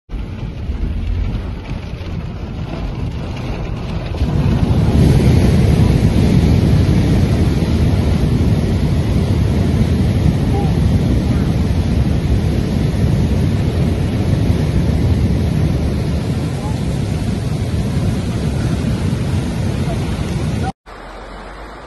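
Steady, loud rush of a flash-flood mudflow and rain, with wind buffeting the microphone; the noise jumps louder about four seconds in.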